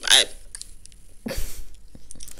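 One brief spoken word, then a single short breathy burst close to the microphone about a second and a half in.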